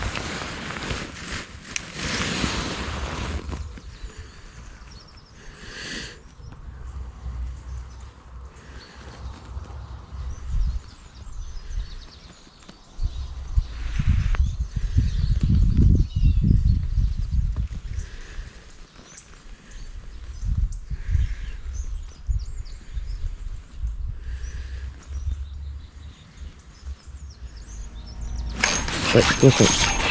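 Low, uneven rumble of wind on the microphone with some handling rustle. Near the end a spinning reel is cranked, reeling in a hooked fish.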